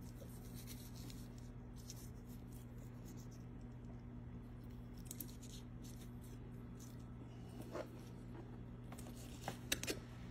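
Kitchen knife slicing and scraping through raw rabbit meat on a cutting board, faint, over a steady low hum. A few sharp clicks come near the end.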